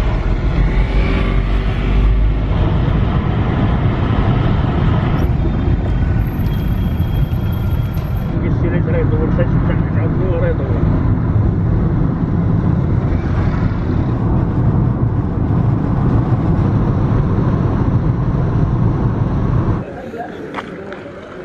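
Steady road and engine noise inside the cabin of a moving shared taxi.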